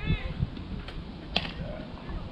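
Outdoor ambience with a low rumble, a voice trailing off at the very start, and a single sharp click about one and a half seconds in.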